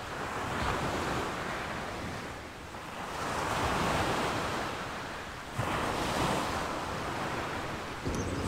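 Ocean surf breaking on the shore, mixed with wind. It rises and falls in slow swells, with a sudden jump in level about five and a half seconds in.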